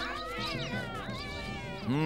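A flock of cockatoos calling in flight: many short, rising and falling squawks overlapping, over steady background music.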